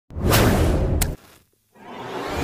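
Whoosh sound effects for a logo intro. One loud rush of noise swells and cuts off just over a second in, with a sharp crack near its end, and a second whoosh starts building near the end.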